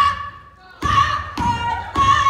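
Step team stomping in unison on a wooden stage, each stomp a sharp thud with a short shouted call from the group. Three new stomps land in the second half, about half a second apart.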